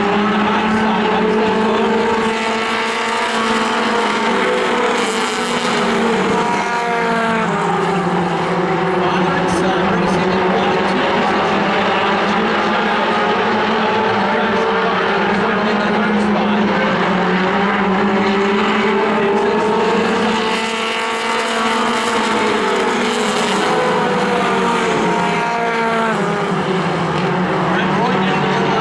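A pack of Outlaw Mini stock cars racing on a short oval: several engines running hard at once, their pitch repeatedly dropping and climbing again as the cars go around.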